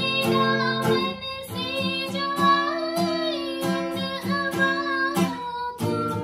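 Woman singing a slow melody with long held notes, accompanied by a steel-string acoustic guitar strummed in steady chord strokes.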